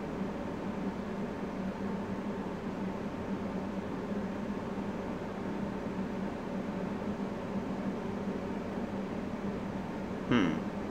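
Steady room noise: an even hiss with a low, constant hum underneath, and no speech.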